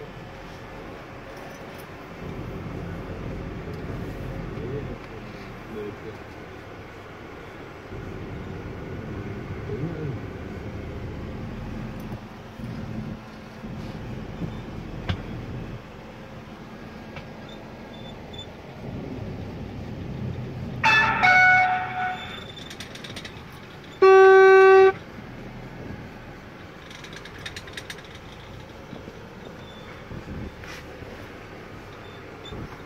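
Vehicle horn sounding twice near the end: first a short, uneven blast, then a steady, louder one lasting under a second. Under it, a car engine runs at low revs as the car drives slowly.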